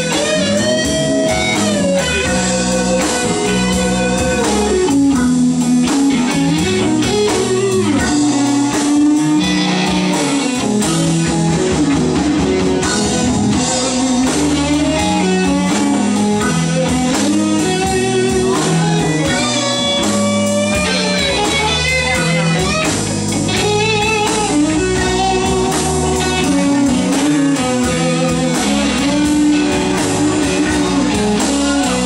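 Live rock band with drums, bass, keyboards and electric guitar playing an instrumental passage of a slow ballad, an electric guitar carrying the lead with bent, wavering notes.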